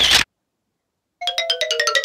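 A short hiss-like burst right at the start, then about a second in a quick run of bright, chime-like notes stepping down in pitch: a short outro jingle.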